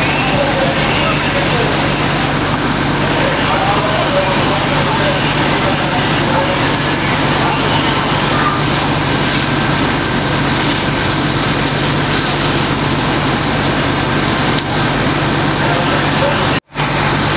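Steady din of a working fire scene: a vehicle engine running with a constant low hum under a continuous rushing noise, with indistinct voices in the background that are clearest in the first few seconds.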